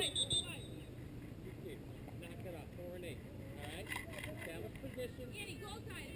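Faint shouts and chatter from players and spectators across an open soccer field, over a steady low rumble. A shrill whistle ends about half a second in.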